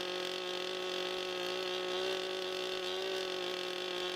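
Chainsaw running at steady high speed, its bar cutting into a log.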